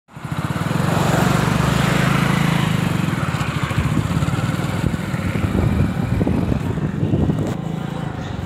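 Small motorcycle engine running steadily while riding, its note easing a little after the first few seconds, with wind rushing over the microphone.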